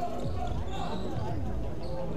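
Indoor basketball gymnasium during a stoppage in play: steady hall noise with faint voices in the background.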